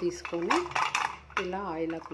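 Stainless steel idli plate being handled and rubbed with fingers: light metal clinks, and squeaky rubbing tones that glide in pitch as fingertips drag across the steel cups.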